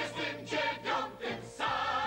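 A chorus of men and women singing a lively song together with a stage band, with a strong beat accented about twice a second.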